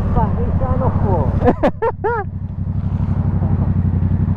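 Yamaha MT-07's parallel-twin engine running steadily at low revs, with an even pulsing note. A person's voice, laughing or mumbling, sounds over it in the first half.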